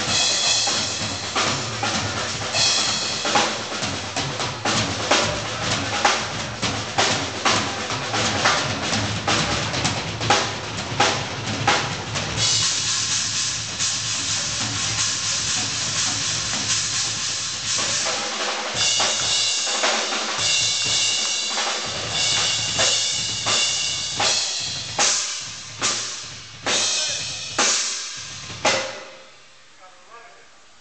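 Live rock band playing loudly with a heavy drum kit. About halfway through, the cymbals wash over the band. The band then hits a string of separate accented stops, and near the end the last hits ring out and fade as the song finishes.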